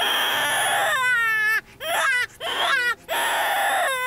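Loud crying wails, animal-like: a harsh, scratchy cry lasting about a second, then wavering wails that slide and fall in pitch, broken by short gaps.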